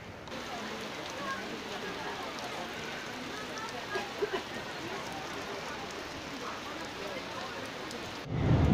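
Heavy rain falling: a steady, even hiss of raindrops, with a few louder taps about four seconds in.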